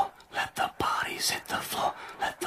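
A voice whispering in short broken phrases.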